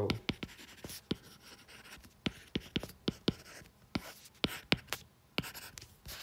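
A stylus tip tapping and clicking on an iPad's glass screen during handwriting, with irregular sharp ticks, a few a second.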